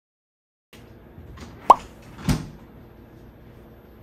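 Kitchen handling sounds on a counter: a faint tap, then a loud sharp click with a quick falling pitch, then a duller thud about half a second later.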